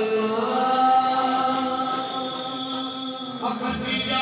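Qawwali singers holding long, gliding sung notes over a steady harmonium drone.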